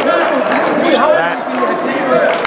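Indistinct overlapping voices and chatter of players and spectators in a gym during a basketball game.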